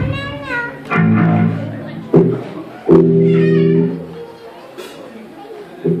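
Electric bass and guitar played loosely through a hall PA between songs: two held bass notes about a second each, high sliding guitar notes, and a couple of sharp knocks.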